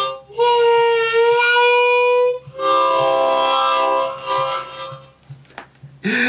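Harmonica played with cupped hands: one long held note for about two seconds, then a chord of several notes held for about a second and a half, fading out near the end.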